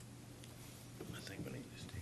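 Faint whispering between men over a steady low hum, the whispers coming in about a second in along with a few small clicks.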